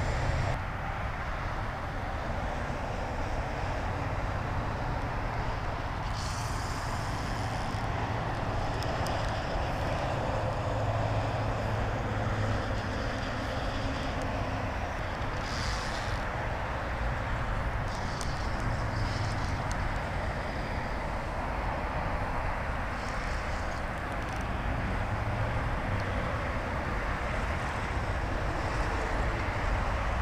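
Steady road traffic noise from passing cars, with wind on the microphone. A thin, higher hiss comes and goes several times.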